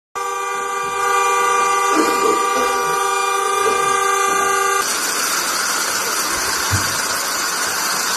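Vehicle horn sounding in one long, steady blast that cuts off abruptly about five seconds in, followed by a steady outdoor background of traffic and voices.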